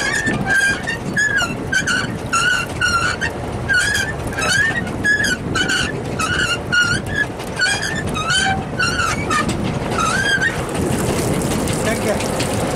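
Rhythmic high squeaks, about two a second, from the hauling gear as the trawl net's codend is pulled up aboard, over the boat's engine running. The squeaking stops about ten and a half seconds in.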